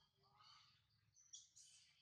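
Faint high-pitched chirping calls: a short one about half a second in, and a louder, brighter one near the end.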